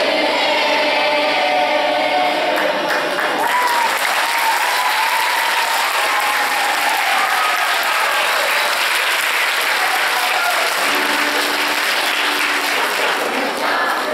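The last sung notes of a carol with acoustic guitar die away in the first seconds, then an audience applauds steadily.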